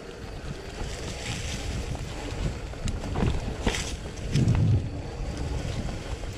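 Mountain bike riding over a trail of dry leaves and rock, with wind buffeting the microphone: a steady rush and low rumble, tyres on leaves, and a few sharp knocks and rattles from the bike over bumps past the middle, then a louder low rumble near the end.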